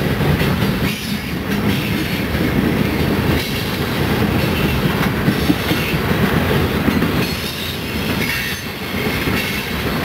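Freight train of coal hopper cars rolling past at close range: a steady low rumble of steel wheels on rail, with a running patter of clicks as the wheels cross the rail joints.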